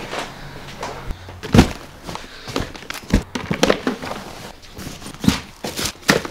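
Packing a suitcase: rustling fabric and a series of soft knocks and thumps as clothes and gear are put in, the loudest thump about a second and a half in.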